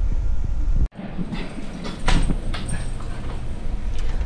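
Pancake cooking on a hot oiled griddle: a noisy sizzle with scattered light crackles over a low rumble. The sound cuts out for an instant about a second in.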